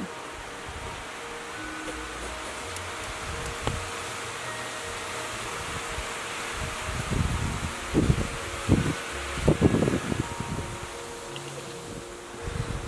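Gusty wind rushing through the trees, building after a few seconds, with several strong gusts buffeting the microphone in the second half. Faint sustained music notes sit underneath.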